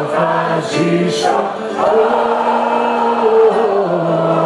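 Male voice singing a Greek song live over instrumental accompaniment, with a long held note through the second half.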